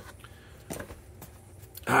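Hands handling and opening a cardboard toy box: a few light taps and scrapes of paperboard, spread out over two seconds.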